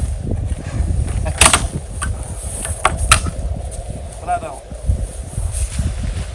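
A pry bar prying a wooden furring strip off a hoop house frame: a few sharp knocks and cracks about one and a half and three seconds in, over a steady low rumble of wind on the microphone.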